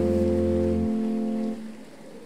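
A live band holding its final chord. The bass drops out about a second in, and the rest of the chord cuts off half a second later, leaving faint room tone.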